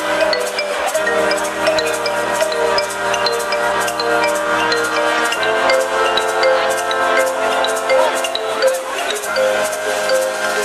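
Live techno brass band music: horns and sousaphone holding sustained chords over a steady, evenly spaced drum beat, the chord shifting about halfway through.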